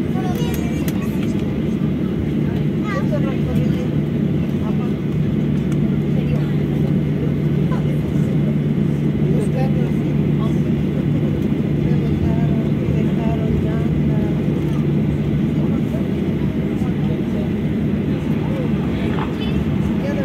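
Steady low drone of a Boeing 737's jet engines at taxi power, heard inside the passenger cabin as the airliner rolls along the taxiway after landing, with faint cabin voices in the background.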